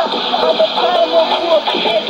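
Shortwave AM broadcast in Arabic, received on a Sony ICF-2001D portable receiver: an announcer speaking through the radio's speaker over a steady static hiss.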